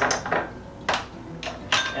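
Measuring spoons and spice containers clinking and clicking against each other and the kitchen counter while spices are measured out: a few separate sharp clicks.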